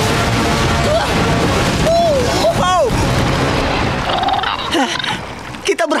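Animated soundtrack of a giant flying bison splashing heavily through a river, under background music, with a few short sliding vocal cries in the middle. The sound thins out near the end.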